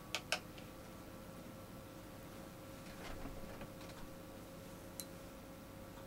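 Faint clicks and light taps of a paintbrush against a plastic watercolour palette as paint is mixed: two sharp clicks near the start, a scatter of softer ticks about three to four seconds in, and one more click near the end, over a steady faint hum.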